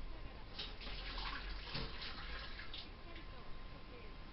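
A woman's speech in Japanese from a television, faint and muffled as heard through the room from the set's speaker, over a steady hiss.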